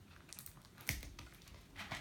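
Faint handling sounds of a plastic ruler on paper pages and sellotape: a few soft rustles and taps, with a sharper click just under a second in and another near the end.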